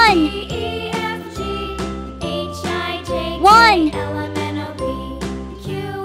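Children's background music with a melody of short, quick notes over a bass line. A rising-and-falling pitch swoop sound effect comes twice, once at the start and again about three and a half seconds in; these are the loudest sounds.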